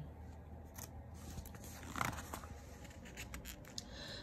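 Faint handling of a picture book's paper page as it is turned: soft rustle and a few light ticks, the most distinct sound about two seconds in.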